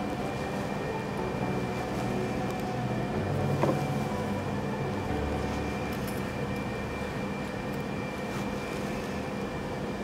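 A steady machine hum with a few faint steady tones in it, and a soft rustle and one light tick from silk fabric and pins being handled about a third of the way in.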